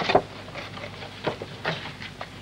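A few soft taps and rustles of cakes and a cardboard box being handled, over a low steady background hum.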